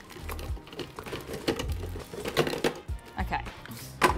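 Frozen banana chunks dropping and knocking into the plastic bowl of a food processor, a scatter of hard clunks, over background music with a low beat.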